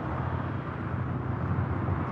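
Steady low drone of a car's engine and road noise, heard from inside the cabin while it is being driven.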